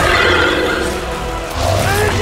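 Action-film sound mix: a loud, shrill, wavering creature-like screech over the score, then a deep rumble joins about one and a half seconds in.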